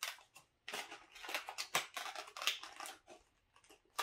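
Thin clear plastic clamshell case crackling and clicking as it is handled in the hands, a string of irregular crisp crinkles with short pauses between.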